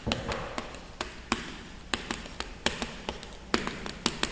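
Chalk writing on a blackboard: a run of short, sharp, irregular taps, about three or four a second, as each stroke of the characters is made.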